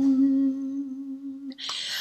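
A woman's voice holding one steady hummed note that slowly fades and ends about a second and a half in, followed by a short breathy rush just before she speaks.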